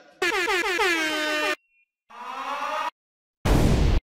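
Sound-effect samples fired one after another from a DJ software sampler: an air horn blast about a second and a half long whose pitch falls, then a shorter siren-like tone, then a loud explosion near the end.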